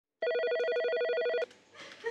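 A telephone ringing: one ring, a rapidly warbling electronic trill of several tones, lasting just over a second and stopping sharply about a second and a half in.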